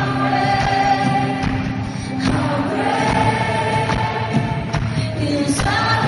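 Live worship band and singers performing a slow song in a large arena, with voices holding long notes over acoustic guitars, heard from among the audience.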